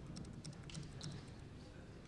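Faint computer keyboard typing: a quick run of keystrokes in the first second or so as a row of digits and spaces is entered.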